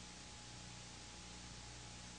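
Faint, steady hiss with a low hum and a thin steady tone: the background noise of the recording itself during a pause, with no other sound.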